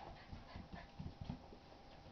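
A bulldog puppy and a Basset Hound x Pug play-wrestling: a quick run of soft, dull thumps and scuffles in the first second and a half, then quieter.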